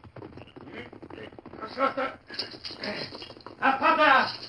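Radio-drama sound effect of a horse's hoofbeats as a rider gallops off, with two short vocal sounds, one about halfway and a louder one near the end.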